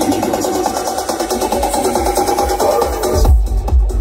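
Techno music from a live DJ set played over a festival sound system. A dense mid-range build with a sung word at the start gives way about three seconds in to a heavy, regular bass kick beat.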